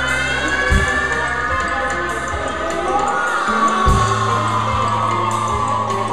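Post-punk band playing loud live music: long, slowly sliding high tones held over steady bass notes, with heavy drum hits about a second in and again near four seconds in.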